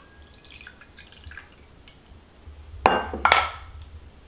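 Lemon hydrosol poured from a stainless steel jug into a glass tumbler, a faint trickle and patter in the first second or so. About three seconds in come two sharp glass clinks, a fraction of a second apart, each leaving a brief ring.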